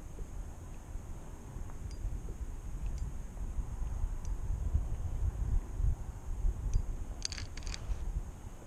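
Low, steady rumble of wind buffeting the microphone over open water, with a brief cluster of faint sharp clicks near the end.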